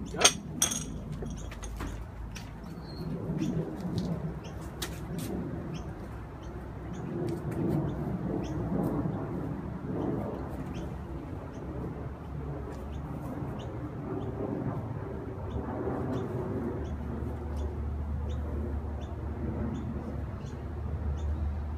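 Birds chirping in short repeated calls over a steady low rumble of outdoor background noise, with one sharp loud click right at the start.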